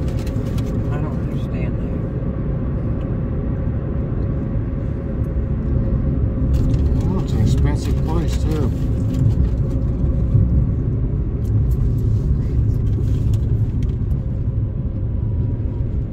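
Steady low rumble of a moving car's road and engine noise heard inside the cabin.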